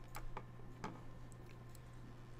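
A few faint, sharp clicks over a steady low electrical hum: computer mouse clicks as brush strokes are painted.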